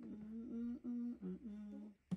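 A person humming a short tune: a string of held notes that step up and down in pitch, one dipping lower just past the middle.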